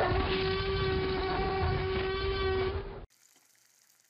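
A loud, steady horn-like blast held on one pitch for about three seconds over a low rumble, cutting off abruptly.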